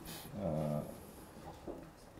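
A man's voice: one short drawn-out vocal sound with a slightly falling pitch, about half a second in, between phrases of speech.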